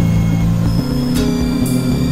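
Experimental electronic synthesizer music: held low drone tones that step to new pitches about every second, with short bursts of hiss above them.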